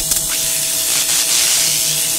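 Transition sound effect under a title card: a loud, steady hiss like static, with a faint steady hum beneath it.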